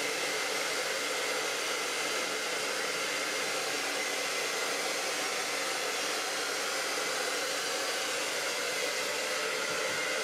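Handheld hair dryer blowing hair dry: a steady rush of air with a faint constant whine, unbroken throughout.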